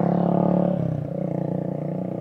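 A motor vehicle's engine passing close by on the road, its pitch dropping about a second in as it goes past, then fading.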